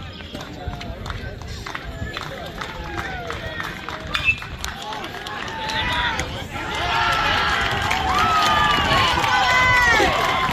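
A metal baseball bat strikes the ball with one sharp ping about four seconds in, then spectators and players shout and cheer, getting louder over the last few seconds as the ball goes into the outfield.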